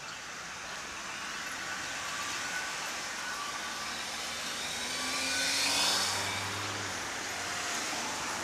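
Street traffic at an intersection, with a car passing close: its engine and tyre noise grows louder to a peak about six seconds in, then eases off.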